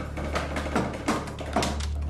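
A wooden rack being wound tighter on a pig's leg gives off short sharp clicks and creaks, about five in two seconds, irregularly spaced, over a low steady hum. The sound marks the joint and frame taking up tension just before something in the knee gives.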